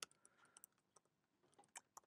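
Faint typing on a computer keyboard: a few scattered keystroke clicks.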